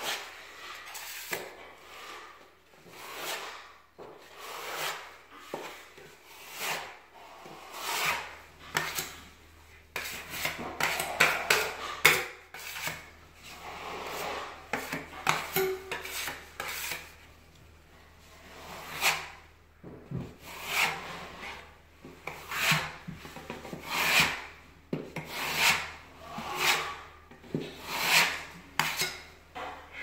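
Metal putty knife scraping filler across a wall while skim-coating, in repeated rasping strokes, roughly one a second.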